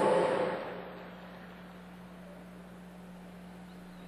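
The echo of an amplified voice dies away over the first second, then only a faint steady low hum with quiet background hiss remains.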